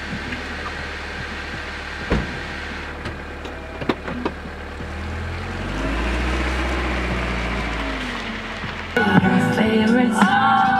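A car door shuts with a thud about two seconds in over a low engine hum; about halfway through, the Honda Accord sedan's engine rises as the car pulls away across icy asphalt, then fades. Music with singing cuts in near the end.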